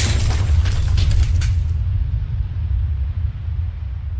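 Sound-effect boom with a deep rumble, crackles of shattering debris over the first couple of seconds, then the rumble slowly fading out.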